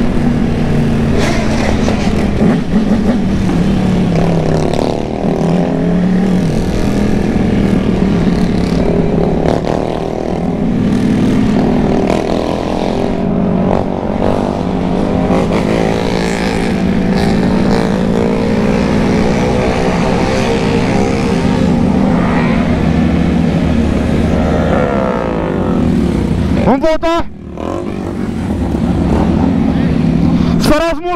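Triumph Tiger motorcycle engine running under way in the gears, heard from the rider's seat, with wind rushing over the microphone. The engine note falls away about 27 seconds in as the bike slows nearly to a stop, then picks up again at the very end.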